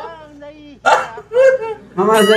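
A man's wordless cries: a falling whine, a sharp yelp just before a second in, then a short cry. These are typical of the pain of clothespins clamped on the face.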